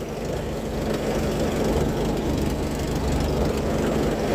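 Small light aircraft's engine running steadily at low power as the plane taxis across grass.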